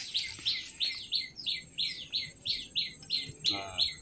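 A bird calling a steady series of short, falling chirps, about three a second.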